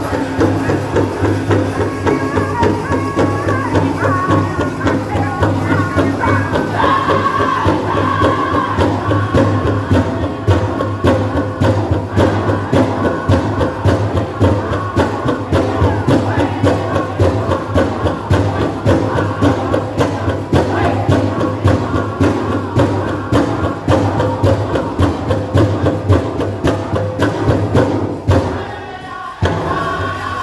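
Powwow drum group singing a jingle dress dance song over a steady, even beat on the big drum. Near the end the song breaks off briefly, then the drum and voices come back in.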